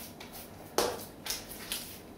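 Hands patting and pressing a raw ground-meat loaf on a parchment-lined baking sheet. There are a few soft pats, the clearest about a second in. The patting presses out air pockets so the loaf won't crack in the middle as it bakes.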